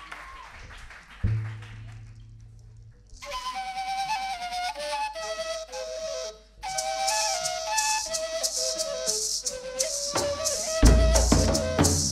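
Colombian gaita flutes play a cumbia melody with a maraca shaking along, starting about three seconds in after a low thump, with a short break in the middle. Heavy drum strokes come in near the end.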